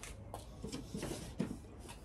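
Faint handling noises: light rubbing and a few small taps as a cigar box guitar is moved about in the hands.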